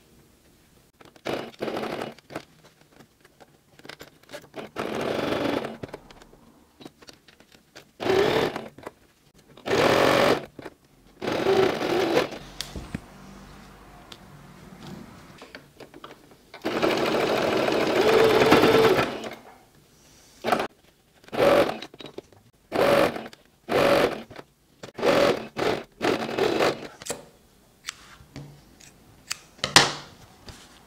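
Domestic electric sewing machine stitching a seam through cotton fabric, running in stop-start bursts of under a second to about two seconds, the longest about halfway through, then a run of quick short bursts near the end.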